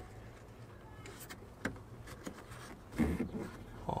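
Scattered light clicks and rustles from a bundle of crimped wires with butt-splice connectors being pushed by hand into a car door's inner cavity. A brief louder sound comes about three seconds in.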